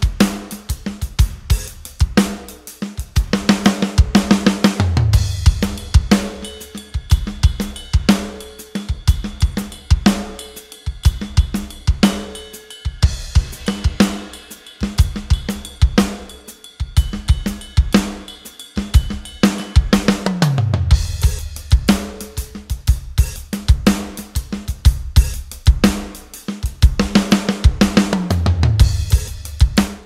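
Hertz Drums sampled rock drum kit playing a groove of kick, snare, hi-hat and cymbals, with falling tom fills about four seconds in, near twenty seconds and near the end. The kick drum's velocity range is turned down to its lower limit, so the kick is forced onto its softest, quietest samples even for the hard hits in the MIDI.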